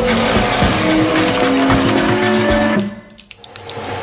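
Loud heavy-machinery engine noise mixed with held music notes, cutting off abruptly just under three seconds in and leaving something much quieter.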